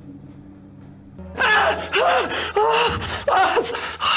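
A faint music bed, then about a second in a mobile phone starts ringing with a song as its ringtone, a loud singing voice and melody that keeps going.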